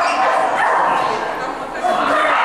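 Dog barking over people talking.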